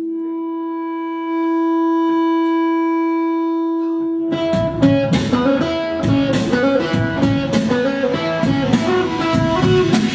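A pop-rock band's rehearsal: one held note sounds steadily for about four seconds, swelling a little louder after the first second, then the full band comes in with guitar and a quick beat of sharp strikes.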